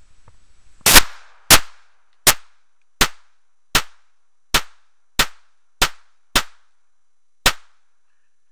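Smith & Wesson 22A .22 semi-automatic pistol firing ten rounds in quick succession, starting about a second in and spaced roughly three quarters of a second apart. Each shot is a sharp crack with a brief echo, and the last comes after a slightly longer pause.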